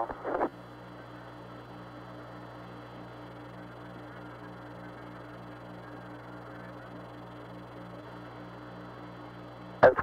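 Steady radio hiss and hum of the Apollo 11 air-to-ground transmission from the Moon, with a faint regular pulsing in the hum.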